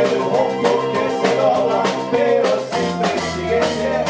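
Live band playing a song: a drum kit keeps a steady beat under electric guitar and keyboard.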